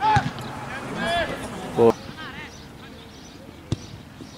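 Short, high-pitched shouted calls from voices around a football pitch, several in the first two and a half seconds, then a single sharp knock near the end.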